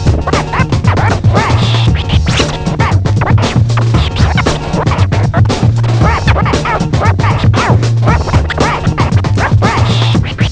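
Turntable scratching: a vinyl record pushed rapidly back and forth by hand and cut in and out at the mixer, giving quick rising and falling sweeps over a backing beat with a heavy bass line.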